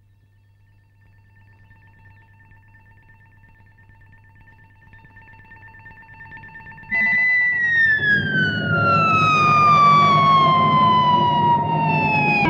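Film soundtrack effect: a faint, steady high tone swells slowly. About seven seconds in, a loud sustained note breaks in and glides slowly downward in pitch over the last few seconds, with a low rumble beneath it.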